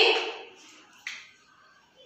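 A single short click about a second in, after the fading end of a woman's spoken word; otherwise a quiet room.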